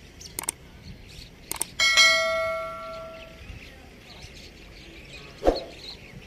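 Subscribe-button sound effect: a couple of short mouse-click sounds, then a bell ding that rings and fades over about a second and a half. A short, loud thump follows near the end.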